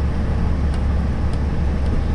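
Iveco Eurostar dump truck cruising on the highway, heard from inside the cab: a steady low diesel engine drone mixed with road and tyre noise.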